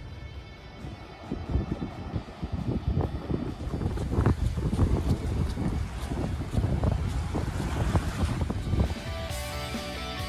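Wind buffeting the microphone in irregular gusts on an open beach, with surf washing at the shore, from about a second in. Background music plays faintly at the start and returns clearly near the end.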